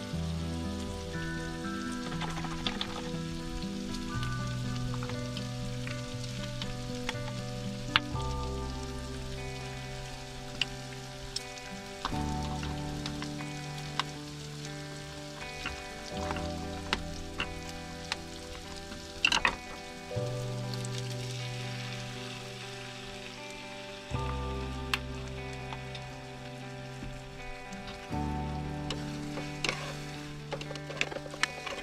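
Background music with chords that change about every four seconds, over food sizzling in a frying pan. Scattered sharp clicks and knocks run through it, the loudest about 8 s in and about 19 s in.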